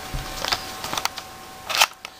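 Cardboard palette box handled close to the camera microphone: a few soft knocks and rustles, then a louder brushing scrape near the end.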